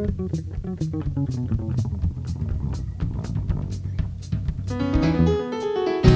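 Jazz trio playing live: an electric bass solo over drums keeping time with cymbal strokes about twice a second. Near the end the stage piano comes in with chords.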